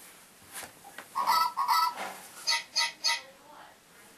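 Small toy robot dogs giving electronic barks: two longer pitched calls about a second in, then three short, sharper calls in quick succession.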